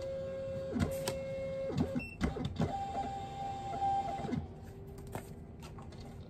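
Rollo thermal label printer printing a shipping label: two runs of a steady motor whine, the second higher-pitched, with clicks as the label feeds. It is being fed single labels by hand because it no longer prints continuously from the roll.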